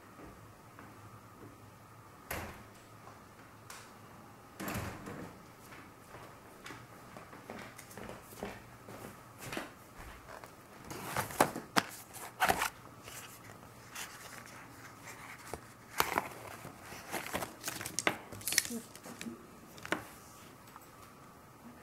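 Scattered clicks, taps and knocks of small objects being handled and set down on a table, with brief rustles, growing busier in the second half. A faint steady hum runs underneath.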